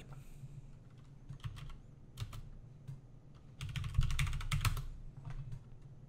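Typing on a computer keyboard: a few scattered keystrokes, then a quick run of keys about three and a half seconds in.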